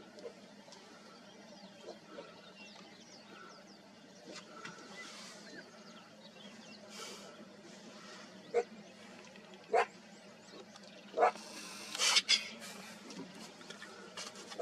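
Cheetah cubs hissing and spitting at a black-backed jackal as a threat over their kill: a few sharp, short spits in the second half, then a longer hiss near the end, over a quiet background.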